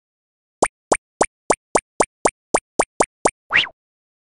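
Cartoon pop sound effects: eleven quick, identical rising 'bloop' pops at about three or four a second, then a longer swoop that rises and falls in pitch near the end.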